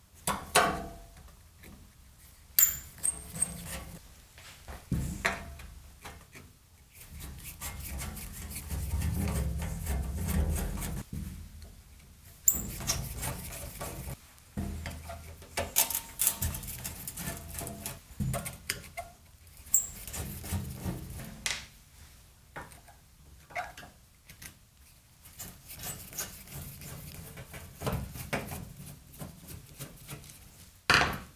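Screws being worked out of the underside of a heavy metal instrument cabinet, with a screwdriver's clicks and scrapes. Irregular sharp clicks and knocks sound as parts are set down and the cabinet is shifted, with a longer spell of rubbing and scraping about nine to eleven seconds in.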